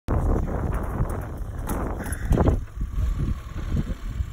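Wind buffeting the phone's microphone in gusts, loudest at about two and a half seconds and then easing.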